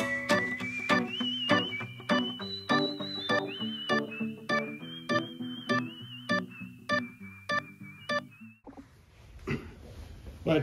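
Background music with a steady beat and a stepping melody, which cuts off abruptly near the end.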